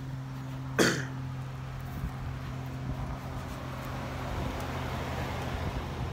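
A man coughs once, briefly, about a second in. A steady low hum and light wind noise on the microphone run underneath.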